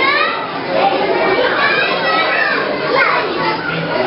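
Many young children playing, their voices chattering and shouting over one another, with high rising calls right at the start.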